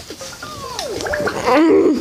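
A person's voice making wordless vocal noises: a slide falling in pitch about halfway through, then a wobbling, warbling sound near the end.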